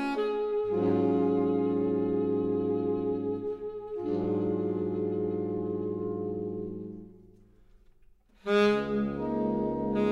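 Saxophone ensemble of soprano, alto, tenor and baritone saxophones playing sustained jazz ballad chords, changing chord about four seconds in. The chord fades to a brief near-silent pause about seven seconds in, then a loud new chord enters near the end.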